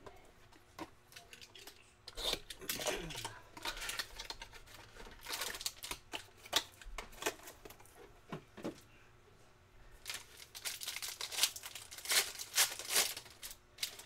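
Foil wrapper of a trading-card pack crinkling and tearing as it is handled and ripped open, in scattered irregular bursts.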